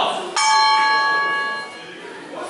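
A single bell strike about a third of a second in, ringing on for over a second before it fades, marking the start of a Sanda bout. It is preceded by a man's short shout.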